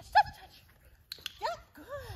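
A dog giving short, high yelps: a loud rising one just after the start, two more rising ones past the middle, and a longer one sliding down in pitch near the end.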